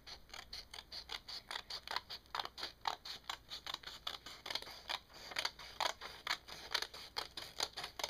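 Scissors cutting through a folded sheet of paper in quick, evenly spaced snips, about four a second, trimming off the leftover strip beside the folded triangle.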